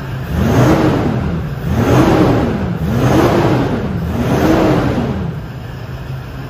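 Lexus LX 450d's twin-turbo V8 diesel revved four times in a row, its pitch rising and falling back over about a second each time. The engine has its EGR valve and diesel particulate filter deleted and a remapped ECU.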